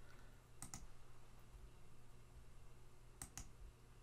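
Two quick pairs of computer mouse clicks, about half a second in and again near the end, over a faint steady low hum.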